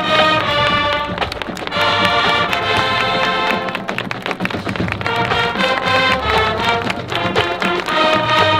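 High school marching band playing, with the brass holding chords in phrases over drum hits.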